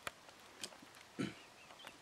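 A black rhinoceros close by, giving one short, low huff of breath about a second in; a sharp click comes right at the start.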